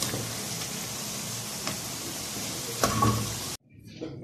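Pieces of food frying in a pan of hot oil: a steady sizzle, with a couple of brief knocks and one louder one near the end. The sizzle cuts off suddenly just before the end.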